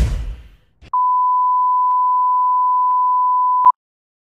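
Film-leader countdown sound effect: a steady, pure electronic beep tone held for nearly three seconds, starting about a second in, with faint ticks once a second and a click as it stops. In the first half-second the tail of a whoosh fades out.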